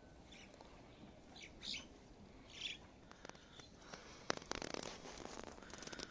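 A few faint, short bird chirps over quiet outdoor background, followed in the second half by a run of light clicks and scuffs.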